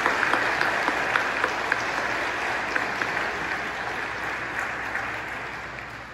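Church congregation applauding, the clapping dying away gradually over the last few seconds.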